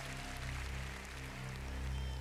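Live band playing a slow ballad in an instrumental passage: sustained deep bass notes pulse under a soft accompaniment, with no singing.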